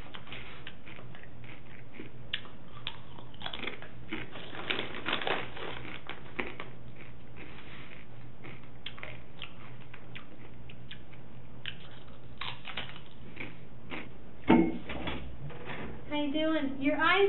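Crinkling and crackling of a chip bag as chips are handled and crunched, in scattered irregular crackles over a steady room hum. One louder thump comes near the end.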